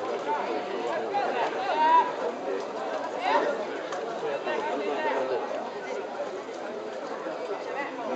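Spectators' voices chattering, several people talking over one another.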